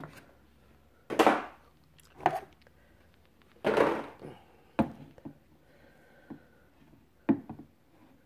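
Stiff clear plastic packaging tray crackling and scraping in a few short bursts as a large vinyl figure is pulled free of it, with sharp knocks of hard vinyl on a wooden tabletop as the figure is set down.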